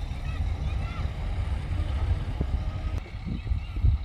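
Low, uneven rumble of heavy diesel machinery at an earthworks, the dump truck running while its bed is raised to tip its load.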